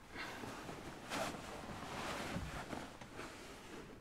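Bedcovers rustling as someone shifts under a duvet, in uneven surges, loudest a little over a second in.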